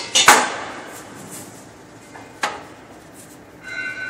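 Sharp knocks, the loudest just after the start with a short ring after it, and a second single knock about two and a half seconds in; a steady high tone begins near the end.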